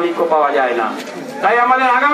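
Only speech: a man speaking loudly into a handheld microphone, pausing briefly a little past halfway, then drawing out his words.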